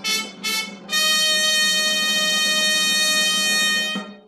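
A fanfare: a run of short repeated notes, then one long held note from about a second in, over a low steady drone, stopping near the end.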